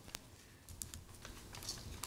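A few faint, irregular clicks and taps over low room noise.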